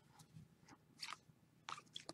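Near silence, with two or three faint soft clicks of a stack of chromium baseball cards being handled and flipped through.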